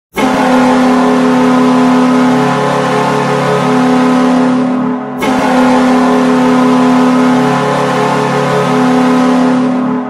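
Buffalo Sabres arena goal horn sounding two long blasts, each about five seconds, with a brief break between.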